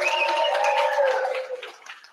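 A warbling electronic tone, several pitches held together, from the live stream's audio link as it switches between sites. It fades out near the end, leaving a few faint clicks.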